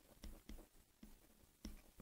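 Near silence, with a few faint, short taps of a stylus on a pen tablet as an equation is written.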